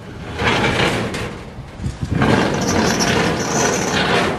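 Steel garden shed's sliding door scraping along its metal track, moved in two long strokes of about a second and a half each, the second with a faint high squeal.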